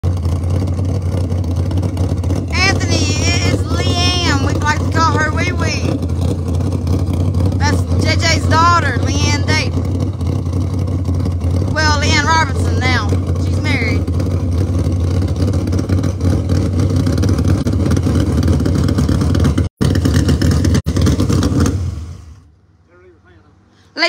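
A Dodge Demon drag car's engine idling loudly and steadily, then shutting off about two seconds before the end.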